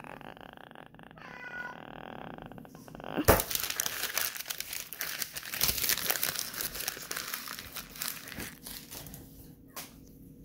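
Sheet of notebook paper being handled and crumpled. A sharp knock comes about three seconds in, followed by about six seconds of continuous crinkling that fades near the end.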